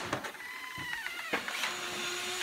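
An interior door's hinges squeaking as the door swings open: a high, wavering squeak of about a second, then a fainter lower tone near the end.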